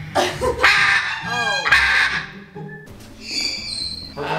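Macaws squawking: a few loud, harsh calls in the first two seconds.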